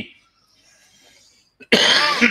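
A faint breath, then near the end a man's short cough or throat-clearing as his voice comes back in.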